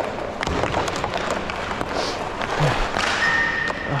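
Rink noise of inline hockey: skate wheels rolling on a plastic sport-court floor, with scattered taps and clacks of sticks and pucks, and a thin steady high tone in the last second.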